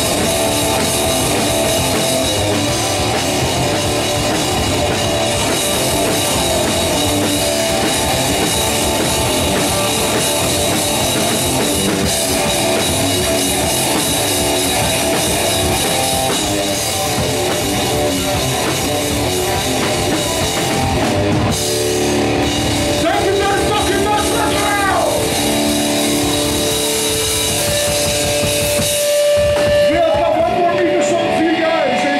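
Live heavy metal band playing loud: drum kit and distorted electric guitars. About two-thirds of the way through, the playing shifts to long held, ringing guitar notes, and the low end drops away just before the end.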